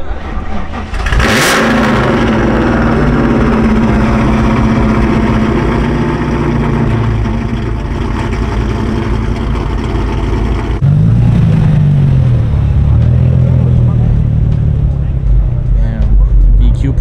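A 1990s Mustang's engine starts with a sharp flare about a second in, its revs dropping and settling into a steady idle. Near the eleven-second mark it is revved up and back down, then keeps running louder with the revs rising and falling.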